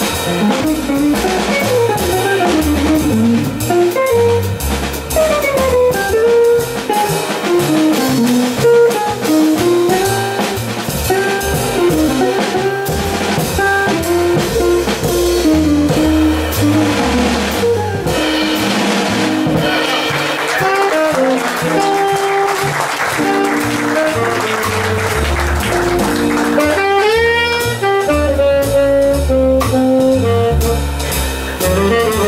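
Live jazz quartet: an archtop guitar plays a single-note solo over upright bass and drum kit. Near the end the tenor saxophone comes in.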